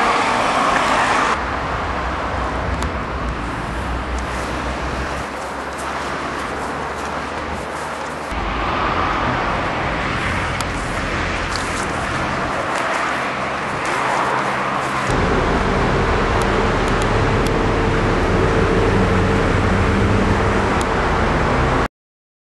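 City road traffic: a steady rush of passing cars and buses with engine hum underneath, changing as vehicles come and go. It cuts off suddenly near the end.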